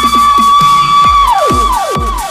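Electronic dance remix in the bigroom bounce style at 132 BPM: a loud, held high synth note that slides down about three-quarters of the way through, over kick drums that each drop steeply in pitch, a little over two a second.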